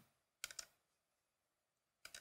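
A few quick computer mouse clicks about half a second in, otherwise near silence.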